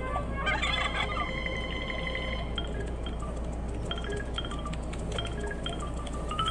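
Cartoon soundtrack from a television with background music. About half a second in comes a high pitched call lasting about two seconds, then short musical notes.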